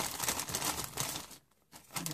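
Plastic packaging crinkling as it is handled, with a short pause about one and a half seconds in.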